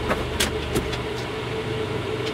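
Steady engine rumble with a low hum and a thin, even tone, broken by a couple of faint clicks in the first second.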